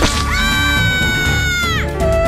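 A high-pitched voice wail, held for about a second and a half and dropping in pitch at the end, as of a cartoon character crying in pain, over background music with a steady beat.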